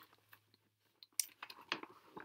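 A near-quiet pause with a few faint clicks and soft short handling noises starting about a second in.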